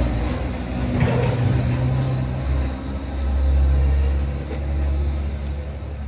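A heavy vehicle's engine running with a low, steady rumble that grows louder about three to four seconds in and then eases off.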